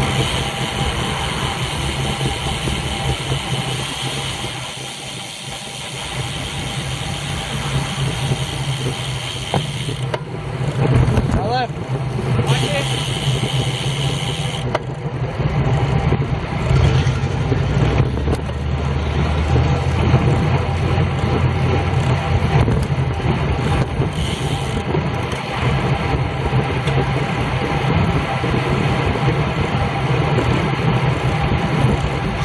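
Wind rushing over the microphone of a camera on a road bike riding at about 20 mph, with motor traffic on the road.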